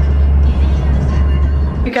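Steady low road rumble inside the cabin of a moving car, cut off suddenly near the end.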